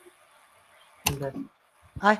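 Mostly quiet room tone broken by one short spoken sound, a brief syllable from a voice about a second in.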